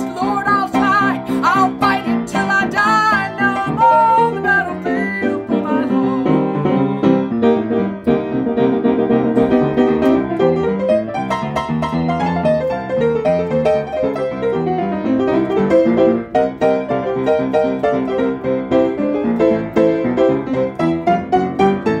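Piano playing an instrumental break in a gospel song, chords and melody at a steady beat, with a sliding higher melodic line over it in the first few seconds.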